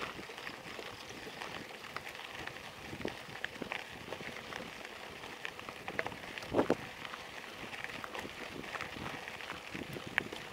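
Mountain bike rolling over a gravel road: a steady crunch of tyres on loose stones with many small clicks and rattles, and one louder knock about six and a half seconds in.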